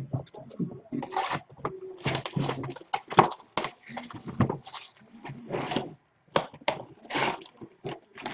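Cardboard trading-card box and its wrapping being handled and torn open: a rapid, irregular run of rustling, crinkling and scraping.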